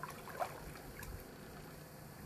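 Faint water sloshing, with a few small splashes in the first second, as a person wades through a shallow creek.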